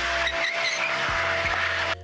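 A small hatchback spinning its tyres in a burnout: a steady, loud tyre squeal over the running engine, cutting off suddenly at the end.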